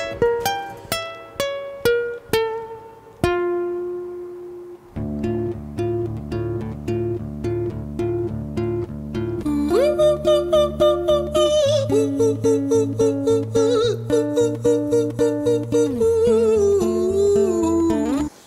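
Acoustic guitar picking an arpeggio, single notes ringing out, then settling into a steady repeating pattern. About ten seconds in, a man's falsetto voice enters with an upward slide. The start of his falsetto carries a slight creak, which the vocal coach puts down to over-compression at the vocal cords or a touch of vocal fry.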